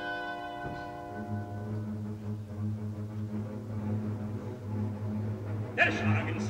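Opera orchestra playing a quiet, slow passage: a held chord dies away in the first second or two and a deep low note is sustained beneath. A singer comes in right at the end.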